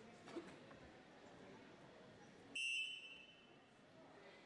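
A referee's whistle blown once, a short shrill blast of about half a second most of the way through, restarting the wrestling bout. Shortly before, near the start, there is a brief thump, over the low hum of the arena.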